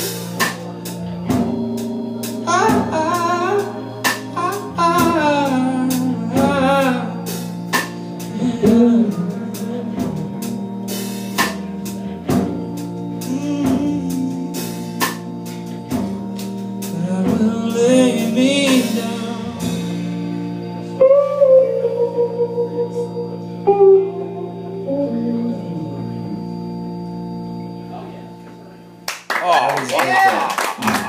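Live soul-jazz band with organ, electric guitar and drum kit playing the end of a ballad: sustained organ chords under a man singing long wavering notes, with cymbal and drum hits. The music dies away near the end and applause breaks out.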